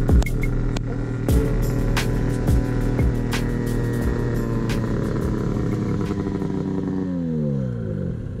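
Background music with a regular beat over a snowmobile engine running as the sled comes closer; near the end the engine note drops steeply as it slows and pulls up.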